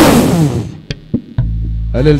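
The church's live worship band plays a sudden loud crash that fades over under a second. Two short knocks follow, then a low held bass note from about halfway through.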